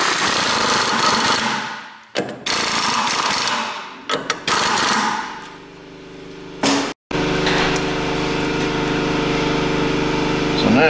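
Pneumatic air hammer running in bursts: two long runs of about two seconds each, then a few short blasts. After a sudden break about seven seconds in, a steady hum with several tones.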